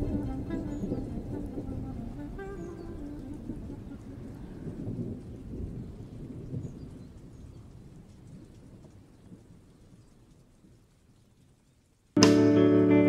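Background music fading out: a few sustained notes early on give way to a low rumbling wash that dies away over several seconds to near silence.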